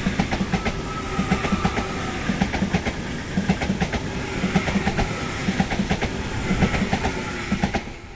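Frecciarossa 1000 high-speed electric train passing slowly: its wheels click over the rail joints in quick groups, one group after another as the bogies go by, over a steady rolling rumble and the hum of its eight traction motors under power. The sound falls away near the end as the last car passes.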